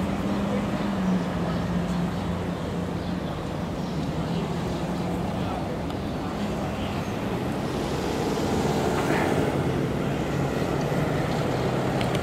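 Steady road traffic noise with a low engine hum running throughout; a second, deeper hum joins about halfway through.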